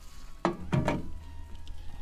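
Metal cooking pot lifted off a camp stove and set down with two knocks, about a third of a second apart.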